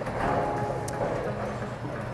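Steady low rumble and hum of bowling-alley machinery, with a light click about a second in.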